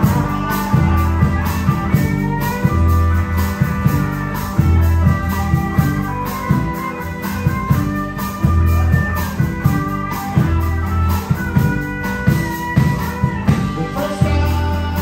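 Live blues-rock band playing an instrumental passage: a lead guitar line with sliding notes over bass and drums.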